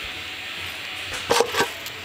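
Steady room hiss, then a short cluster of knocks and rustles about a second and a half in, as the camera is picked up and handled.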